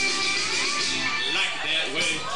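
Country karaoke backing track playing an instrumental passage with guitar, steady throughout.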